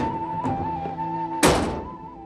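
Background drama score with a long held melody note; about one and a half seconds in, a gate or door slams shut, the loudest sound here.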